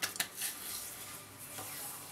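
Hands patting and rubbing cologne onto freshly shaved cheeks: two soft taps at the start, then a faint rubbing hiss.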